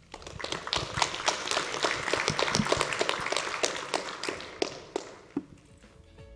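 Audience applauding: a dense patter of hand claps that starts at once, holds for a few seconds, then thins out and fades away near the end.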